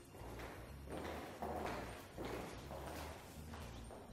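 Many high heels clicking and scuffing on a tiled floor as a group of women walks together, an irregular patter of overlapping steps.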